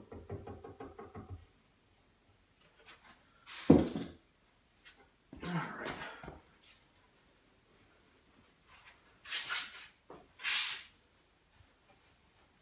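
A caulk gun dispensing construction adhesive, with a rapid run of short creaks and clicks as it is squeezed, then a single sharp knock about four seconds in. Denim insulation batts are handled and pressed into a wooden frame, making a few brief rustling, scuffing sounds near the end.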